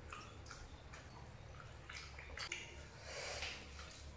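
Faint sounds of eating by hand, rice being mixed with curry gravy, with a few soft clicks over a low steady hum.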